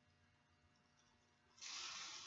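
Clear plastic bag of faux flower petals rustling as a hand works in it: a short crinkle about one and a half seconds in, after near silence.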